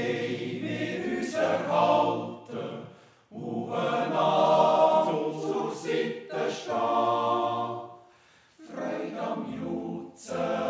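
Swiss men's yodel choir singing a Jodellied a cappella in sustained chords. The singing comes in three phrases, with short breaks about three seconds in and again about eight seconds in.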